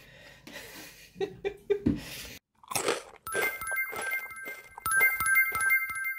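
A short subscribe-button sound effect starting about three seconds in: a few steady chiming tones held together over a quick run of sharp clicks. Before it, faint taps and scuffs as a cat bats a small snowball on a windowsill.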